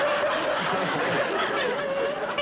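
Studio audience laughing.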